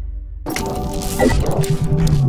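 Video segment-transition sound effect with music: a sudden sharp crack-like hit about half a second in, followed by a rushing noise, and a low tone that begins to drop near the end.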